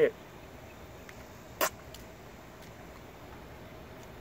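A person spitting once, a short sharp spit about a second and a half in: a dipper spitting out tobacco juice.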